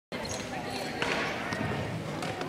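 Gymnasium din of indistinct background voices with a few short knocks from play on the courts.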